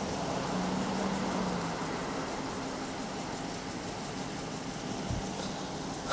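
Steady low hum of a vehicle engine idling, with a soft low thump about five seconds in.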